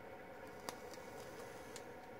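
Quiet room hiss with two faint clicks about a second apart, during a draw on a vape mod with a rebuildable dripping atomizer.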